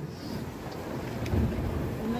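Low rumble of wind buffeting the microphone over the running engine of a tour boat on the sea, growing louder about two-thirds of the way through.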